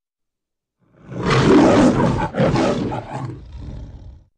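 Metro-Goldwyn-Mayer logo lion roaring twice, starting about a second in; the second roar is weaker and fades out near the end.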